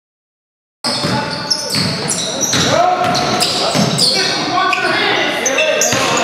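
Silence, then a little under a second in the live sound of a basketball game in a gym cuts in: a basketball bouncing on the hardwood floor, short high sneaker squeaks and players' voices, all echoing in the hall.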